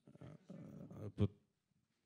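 Quiet, indistinct speech for about a second, with a short louder syllable, then a pause.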